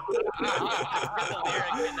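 Several men laughing and chuckling together, their laughs overlapping.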